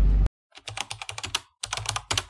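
Keyboard-typing sound effect: a rapid run of key clicks in two bursts, with a short break about one and a half seconds in. Just before it, a low car-cabin rumble cuts off abruptly.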